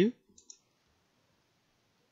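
The tail of a spoken word, then two faint short clicks about half a second in, followed by quiet room tone.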